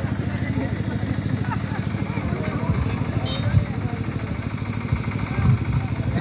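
A small engine running steadily with an even low putter, under faint voices of onlookers.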